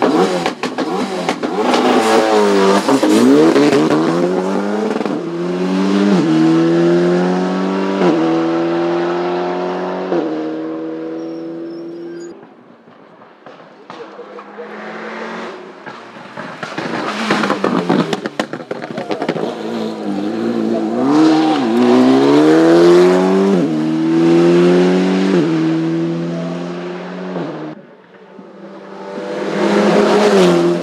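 Renault Alpine A110 race car's turbocharged four-cylinder engine accelerating hard. Its revs climb and cut back at each upshift through several gears. It passes close twice, fading away near the middle before building up again.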